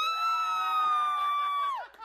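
A person's high-pitched scream: one long held shriek that glides up at the start and falls away as it ends, shortly before the end.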